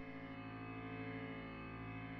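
Quiet background music: a sustained chord held steadily, without speech.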